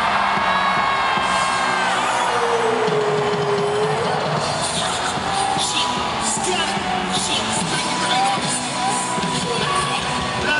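Hip-hop music over a concert sound system, opening with held synth notes and a sliding tone about three seconds in, as an arena crowd cheers and whoops.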